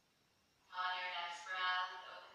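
A voice in long, held, singing-like phrases starting under a second in, thin with little low end, as if played through a small speaker.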